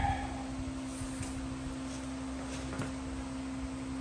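A steady hum, with a few faint knocks from the front brake rotor and steering knuckle being turned by hand.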